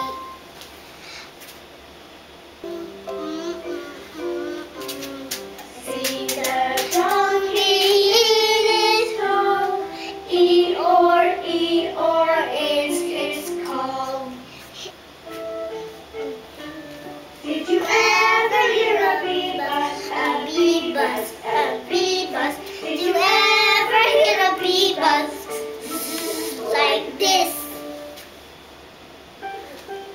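A children's phonics song: a child's singing over simple backing music, sung in two stretches with short instrumental gaps between.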